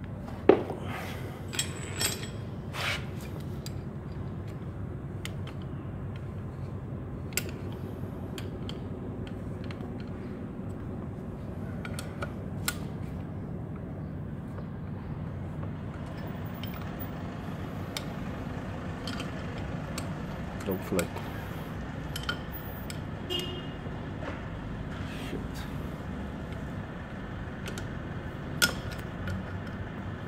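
Scattered sharp metallic clicks and clinks of an Allen key and bolts as a DQ500 transfer case is bolted up, the loudest about half a second in, over a steady low hum.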